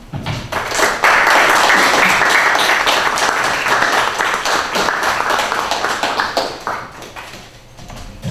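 Audience applauding. It builds up within the first second, holds steady for about five seconds, then dies away near the end.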